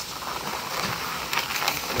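Inflated latex twisting balloon (a blue 350) being handled and twisted in the hands: a soft rubbing, crinkling noise with a few light ticks.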